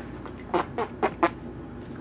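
Four short, quick vocal calls about a quarter second apart, over a steady low background noise.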